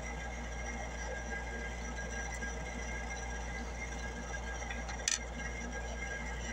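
Steady low room hum with a faint hiss, broken once about five seconds in by a single short click.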